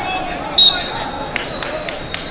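A referee's whistle blown once sharply about half a second in, the loudest sound here, trailing off into a faint held note, over steady chatter in a large hall. A few light knocks follow.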